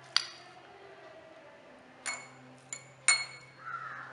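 Steel spoon clinking against glass while scooping soaked almond gum, about four sharp strikes, each ringing briefly.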